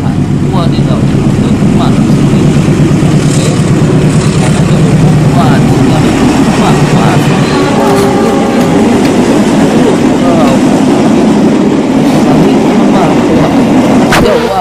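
Battery-powered toy trains running on plastic track: a loud, steady whirring rattle of small motors and wheels, with clatter from toys being handled.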